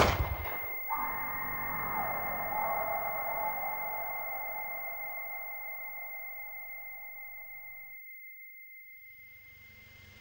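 The tail of a pistol gunshot in the film's sound track, then a steady high-pitched ringing tone, the movie's ear-ringing effect after a shot. Beneath it a muffled wash of sound fades away and cuts out about eight seconds in, while the tone carries on faintly.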